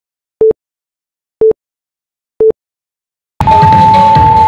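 Interval workout timer counting down the end of a rest break with three short, identical electronic beeps a second apart. Then a longer, higher tone sounds as loud upbeat electronic dance music cuts in suddenly, marking the start of the next exercise.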